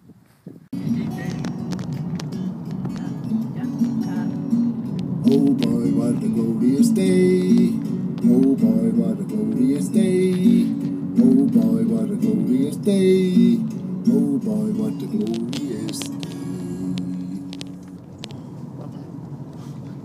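A song, a voice singing a melody over a steady accompaniment. It starts abruptly just under a second in and drops in level near the end.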